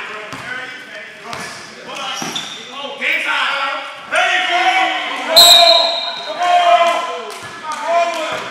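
Basketball dribbled and bouncing on a gym floor, a run of short sharp bounces, with players' voices calling out over it.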